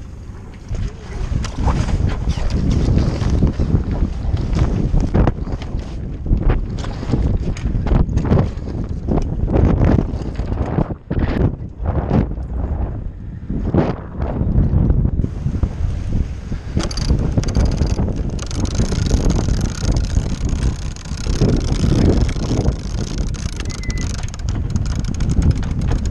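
Wind buffeting the microphone aboard a sailboat under way, in loud uneven gusts that start about a second in.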